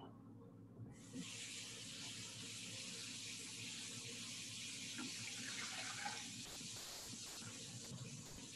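Kitchen tap running a steady stream of water, turned on about a second in, with a few faint knocks of kitchenware partway through.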